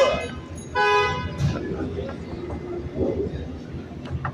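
A car horn honks once, a short steady blast about a second in, over low street noise.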